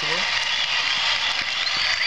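A live broadcast playing through a phone's small speaker: a tinny wash of crowd noise with faint distant voices, without any bass, and a thin high tone coming in near the end.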